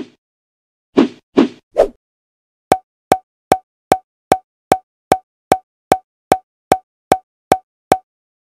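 Editing sound effects: a single pop, then three quick soft pops about a second in, then a run of fourteen short, evenly spaced pops, about two and a half a second, one for each check mark popping onto a spec list.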